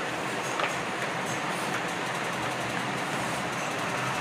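Steady rushing background noise with a faint low hum, even throughout with no distinct knocks or clicks.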